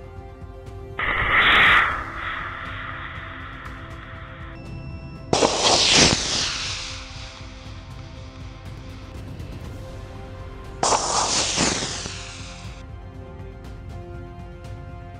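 Background music throughout, with three bursts of a model rocket motor firing, about a second in, near the middle and late on. Each starts suddenly and fades over a second or two.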